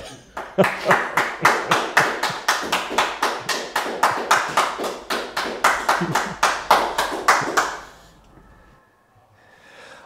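Hands clapping in steady applause, about four claps a second, with a short laugh early in the clapping. The applause dies away about eight seconds in.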